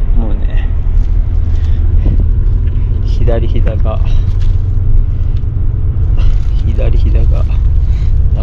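Bus running on the road, heard from inside the passenger cabin as a steady low rumble. A voice speaks briefly twice over it, about three seconds in and again near the end.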